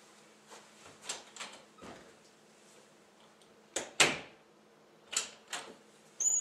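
Footsteps on a hard floor and an interior door being handled: a scatter of irregular knocks and clicks, the loudest about four seconds in.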